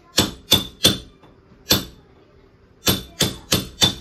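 Hammer blows on a metal wall bracket being fixed to the wall, each strike with a short metallic ring. Four blows come in the first two seconds, then after a brief pause four more in quick succession.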